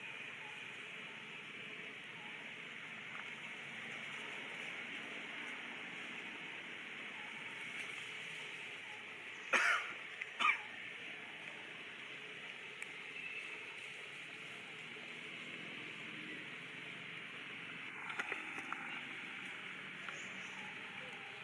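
Two short, sharp cough-like sounds about a second apart, halfway through, over a steady background hiss; a few faint crackles follow near the end.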